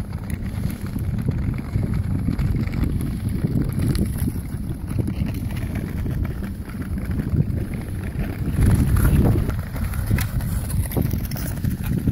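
Wind buffeting the microphone while skating across clear lake ice: a steady low rumble, a little louder about nine seconds in.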